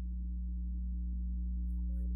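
A steady low hum of several level pitches, with fainter, broken tones flickering just above it.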